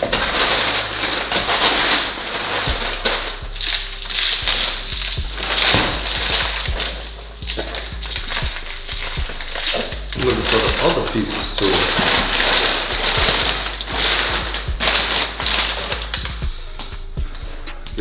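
Brown kraft packing paper and bubble wrap rustling and crinkling as they are handled, in uneven bursts that rise and fall.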